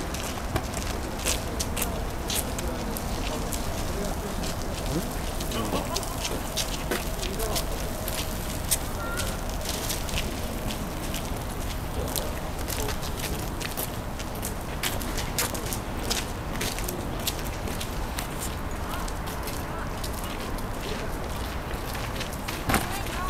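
Indistinct chatter of people some way off over a steady low background rumble, with scattered light clicks.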